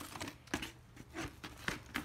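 Cardboard jackets of 12-inch vinyl records being flipped through by hand in a plastic crate: several short taps and slaps as the sleeves knock against each other.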